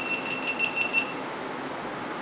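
A high electronic beep tone lasting about a second, pulsing about five times before it cuts off.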